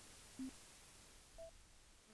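Near silence broken by two short electronic beeps: a low one about half a second in, and a higher one about a second later.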